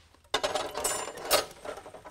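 Metal threaded rods (all-thread) clattering and clinking against each other on a workbench as they are handled, with a bright metallic ringing. The clatter starts suddenly about a third of a second in and dies down after about a second and a half.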